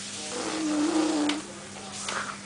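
A single drawn-out, baby-like vocal sound held at one steady pitch for about a second, from either the baby or the father mimicking him.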